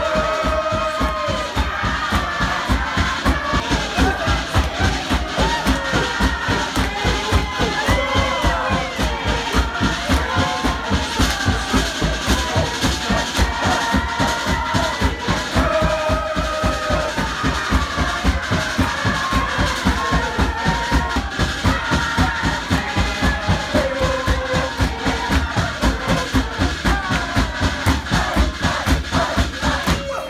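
Group singing and shouting over a fast, steady beaten rhythm: live accompaniment to a communal dance.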